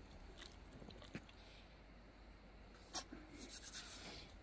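Faint handling sounds at a steel cooking pot on a grill: a few light clicks, then a sharper click about three seconds in followed by a short scrape.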